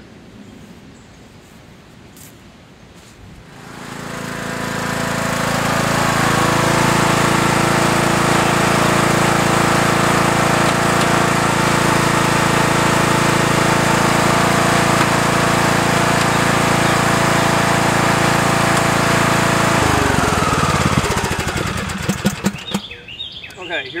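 A John Deere D105 riding mower's Briggs & Stratton engine starts about three and a half seconds in, comes up to a steady run over a couple of seconds while the mower is driven and turned around, then is shut off at about twenty seconds and winds down.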